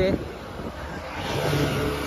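Road traffic: a motor vehicle passing on a highway, its engine and tyre noise building up over the second half.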